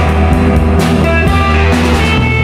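Rock band recording playing: electric guitars and bass over a drum kit, with steady drum hits.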